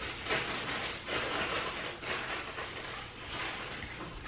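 Fabric rustling in uneven bursts as a knit sweater is pulled and tugged onto a small dog.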